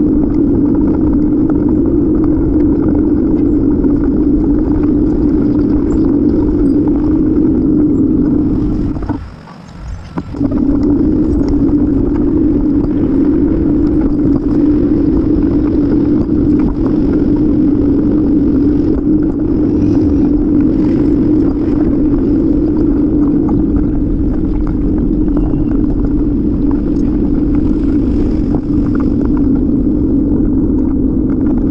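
Steady, loud rumbling ride noise from a camera mounted on a moving bicycle. It drops out briefly about nine seconds in, then carries on unchanged.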